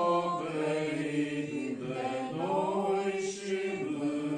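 A congregation of men singing a hymn together without accompaniment, holding long notes in unison, with a brief break between phrases about two seconds in.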